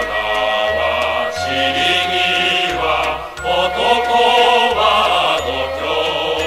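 A mixed choir singing a Japanese wartime popular song in sustained, held notes, over an instrumental accompaniment with a stepping bass line.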